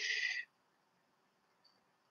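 A man's short breath, a hiss of about half a second right at the start, followed by near silence.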